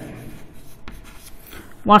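Chalk writing on a chalkboard: a quiet run of short scratching strokes as words are written by hand.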